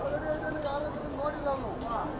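People talking in the background, several voices chattering at a moderate level, with no single voice close up.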